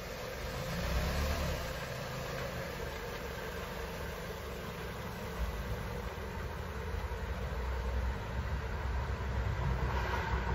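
A Dodge Journey SUV's engine running at low speed as it slowly reverses away up a gravel driveway, with a steady low rumble and the noise of its tyres on the gravel.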